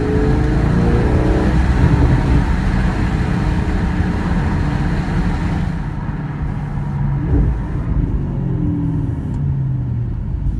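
2016 Audi S6 twin-turbo V8 heard from inside the cabin while driving. The revs climb briefly at the start, hold steady, then the engine eases off and gets quieter about six seconds in as the car slows.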